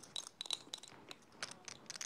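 Poker chips clicking against each other as a player handles a chip stack, in quick, irregular clicks.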